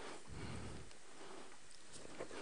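Faint room noise in a large hall, with a soft low murmur about a third of a second in and no clear words.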